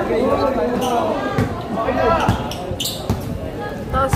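A basketball bouncing on the court floor with a few sharp thuds, under the voices and shouts of players and spectators.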